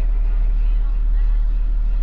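Steady low rumble of a delivery truck's idling engine, heard inside the cab. A faint voice comes in briefly in the middle.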